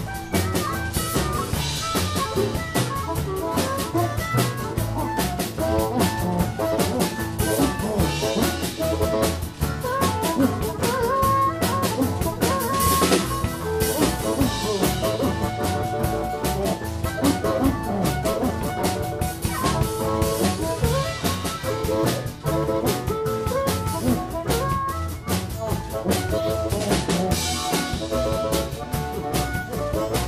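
Live blues-rock band playing an instrumental passage: a harmonica cupped against a handheld microphone plays lead over a drum kit.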